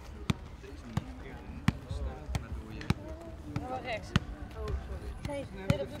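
A football being kicked and volleyed between players on grass, a sharp thud from the boot roughly every two-thirds of a second, with faint voices in between.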